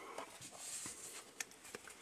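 Faint handling of a stack of Pokémon trading cards: a soft rustle and a few light clicks.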